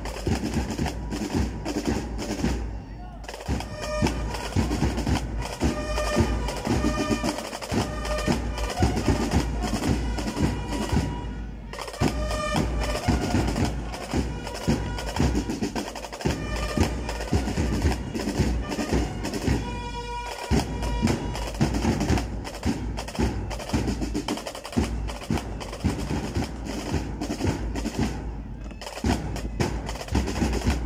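A band's drum section playing a steady marching beat: snare drums with rolls and many sharp, dry clicks. A few times a short held pitched tone sounds over the drumming.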